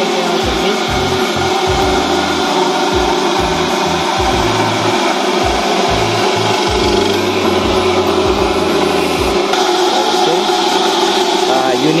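Electric coconut grater running steadily, its spinning serrated head scraping the meat out of a half coconut shell pressed against it; noisy.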